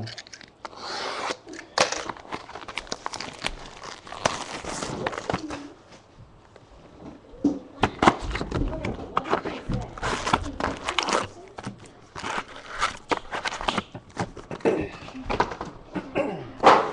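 Trading-card pack wrappers crinkling and tearing as packs are ripped open by hand, in irregular crackly bursts with a short lull partway through.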